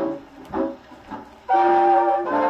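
1938 swing band record, a 78 rpm disc, playing through an acoustic phonograph's horn reproducer. After a brief lull with a few short notes, the band comes back in loudly about one and a half seconds in.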